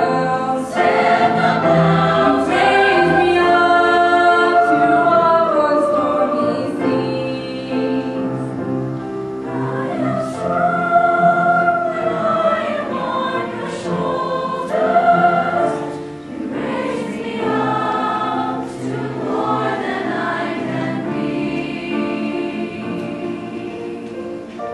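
Mixed choir singing in parts, holding sustained chords with crisp consonants; the singing dies away near the end.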